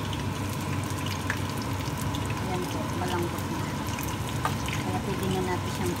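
Braising liquid of a pot of caramelized pork and eggs, sloshing and trickling as a metal ladle scoops and pours it, with a few light clinks of the ladle against the pot.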